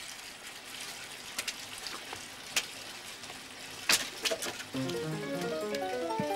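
Water gushing from a bathtub tap into a filling tub, a steady rush with a few sharp clicks. Near the end a quick run of short musical notes starts, climbing in pitch.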